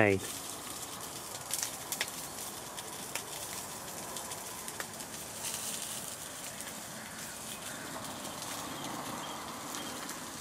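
Sausages frying in a pan on a camping gas stove: a steady sizzle, with a couple of sharp pops about one and a half and two seconds in.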